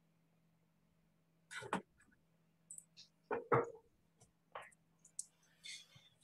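Faint, indistinct speech in a few short snatches, some of it breathy or whispered, over a low steady hum.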